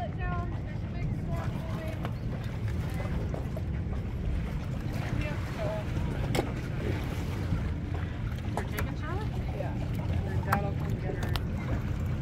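Steady low rumble of wind on the microphone, with faint voices calling now and then and a few brief knocks.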